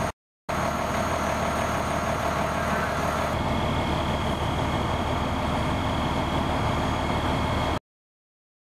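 Vehicle engines idling steadily, a low hum with a steady higher tone over it. The sound drops out briefly just after the start, changes about three seconds in, and cuts off suddenly near the end.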